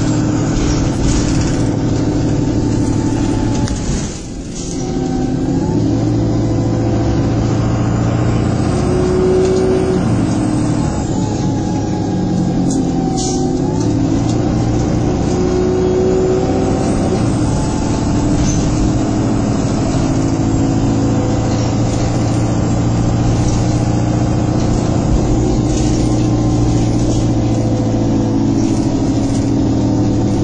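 A moving Stagecoach Manchester bus, fleet number 27624, heard from inside the passenger saloon. Its diesel engine runs steadily under load. The engine note rises and falls several times as the bus accelerates and changes gear, and there is a short drop in the noise about four seconds in.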